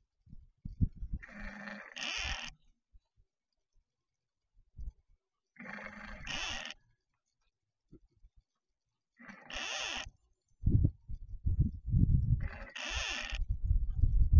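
Pan-tilt security camera's motor heard through the camera's own microphone: four short whirring bursts a few seconds apart as it moves to follow a person, with low thuds and a low rumble growing louder near the end.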